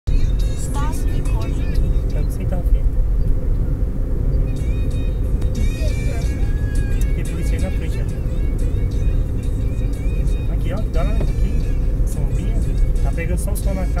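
Steady road and engine noise inside a car's cabin, cruising on a highway at about 70 km/h.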